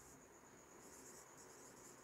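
Faint strokes of a marker pen writing on a whiteboard, a run of short scratchy sounds beginning about a third of the way in.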